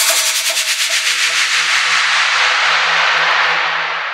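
Dubstep track in a breakdown: a loud white-noise sweep with quiet pulsing synth notes under it, the heavy bass gone. Near the end the hiss closes down and fades.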